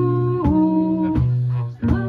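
Live band playing a groove: bass guitar, electric guitar, drum kit and keyboard under a woman's held sung notes. The band drops out briefly just before the end, then comes back in on a drum hit.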